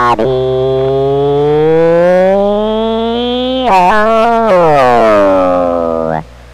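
A man's voice drawn out in a long siren-like howl heard over CB radio: the pitch climbs slowly for three or four seconds, wobbles briefly, then slides down again.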